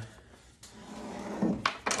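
A wooden instrument mold being lifted and shifted on a wooden workbench: a click about half a second in, then a few light knocks and scrapes of wood on wood.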